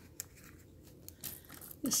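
Faint handling sounds: a few small clicks as a jewellery charm box is opened and a charm taken out of it, with a woman starting to speak near the end.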